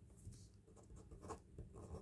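Faint scratching of a pen writing on paper, in a few short strokes.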